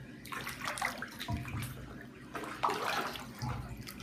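Bath water sloshing and splashing as clothed legs in sneakers move through a full bathtub, in two bouts, the first starting just after the beginning and the second from about halfway through. Each bout ends in a dull low thump.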